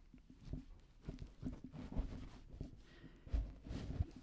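Pillows and a microphone being handled right at the mic: soft fabric rustling and irregular small knocks, with a couple of dull low thumps near the end as the mic is moved.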